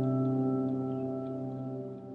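Background music: a held chord of several steady tones, slowly fading.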